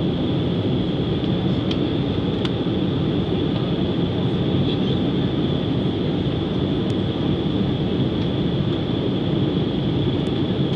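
Steady cabin noise of an Embraer E-Jet airliner climbing after takeoff, heard from a window seat: a low rumble of engines and airflow with a thin, steady high whine over it.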